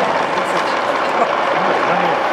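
Ballpark crowd noise: a steady hubbub of spectators in the stands, with voices talking close by.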